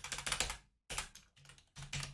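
Computer keyboard typing in short quick runs of keystrokes: one run at the start, another about a second in, and a third near the end.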